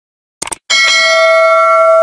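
A short click about half a second in, then a bell chime that starts just under a second in and rings steadily: the click-and-notification-bell sound effect of a YouTube subscribe-button animation.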